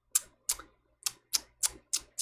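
Six sharp clicks from computer controls at the desk, about three a second, one of them fainter.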